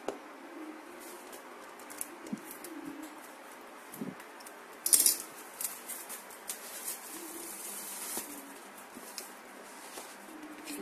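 A small cardboard box being cut open with scissors and unpacked by hand: scattered snips, clicks and rustles of cardboard and paper, loudest a sharp crackle about five seconds in.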